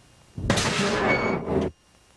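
A film soundtrack sound effect: a sudden loud burst of noise, sharp at the start, lasting just over a second and cutting off abruptly, over faint tape hiss.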